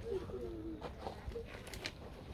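A dove cooing faintly: one soft, falling coo in the first second and a short note just after the middle.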